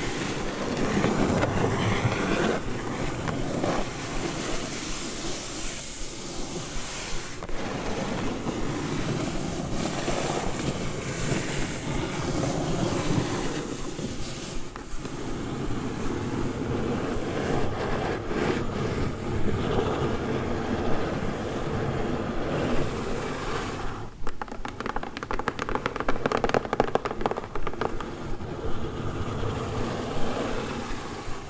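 Long fingernails scratching, rubbing and tapping on a corrugated cardboard mailer box, close to the microphone. Near the end the strokes turn quick and crisp.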